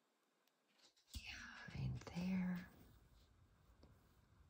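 A woman's voice softly whispering or murmuring to herself, about a second in, for about a second and a half; no words come through clearly.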